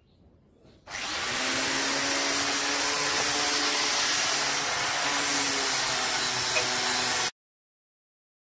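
Handheld angle grinder fitted with a sanding disc, switching on about a second in and running steadily with a strong hiss over a steady hum, used for sanding a wooden door. The sound cuts off abruptly near the end.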